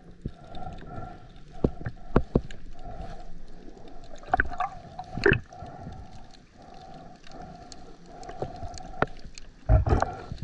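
Muffled underwater sound of a diver's hands and gear: scattered clicks and knocks over a hum that swells and fades in a steady pulse. Louder knocks come about halfway and again near the end.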